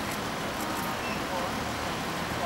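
Steady street ambience: traffic hum with faint, indistinct voices.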